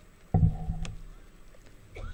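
A pause in a man's Quran recitation over a microphone: a single low thump about a third of a second in, then faint background noise.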